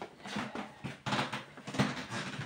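Handling noise from a smartphone being picked up and moved: soft bumps, rubs and a few short knocks against the microphone.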